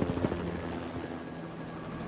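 Helicopter flying by, its rotor chopping fast and evenly over a low steady hum, loudest at the start and easing off.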